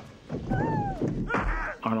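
Movie fight-scene soundtrack: a man's yell that rises and then falls in pitch about half a second in, followed by a second, harsher shout just before narration resumes.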